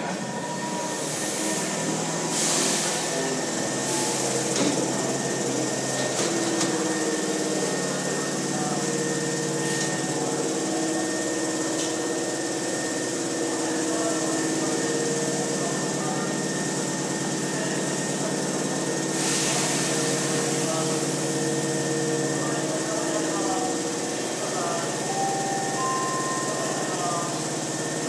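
Hankyu 5300 series electric train coming to a stop at an underground platform and standing with its doors open, with a steady machine hum and a few short bursts of hiss.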